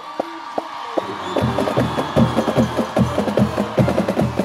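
Percussion-driven music: a few sharp clicks at first, then, about a second and a half in, a fast, steady drum beat kicks in and carries on.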